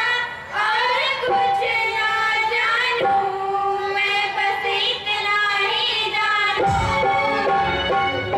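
Three young women singing a song together into handheld microphones, in long held notes that step up and down. Low thumps come in near the end.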